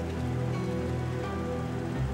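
Background drama music: soft sustained notes held steady over a light hiss.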